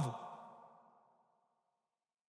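The tail of a man's last spoken word fades in the hall's reverberation over about half a second, then silence.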